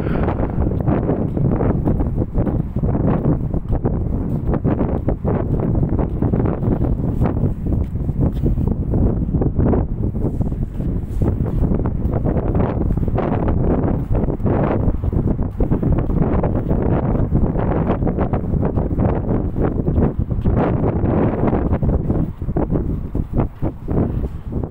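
Wind buffeting the phone's microphone: a continuous low rumble that flutters and gusts.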